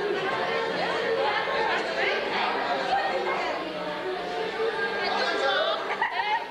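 Chatter of several people talking over one another in a room, with no single voice standing out.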